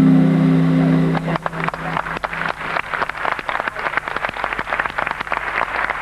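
The skating program's music ends on a held chord that stops about a second in, followed by an audience applauding: a dense, steady patter of many hands clapping.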